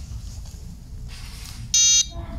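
One short, loud electronic beep near the end from the piezo buzzer on a 433 MHz wireless relay receiver board, sounding as the board receives the remote's signal and latches its relay on to switch on the 12 V LED.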